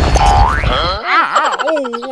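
Cartoon sound effects for a fall and landing: a loud crash with a deep rumble that stops about a second in, a rising boing just before that, then a wobbling pitched sound that rises and falls.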